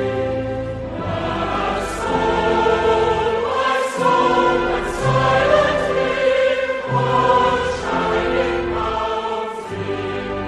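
Background music: a choir singing with instrumental backing, in long held chords.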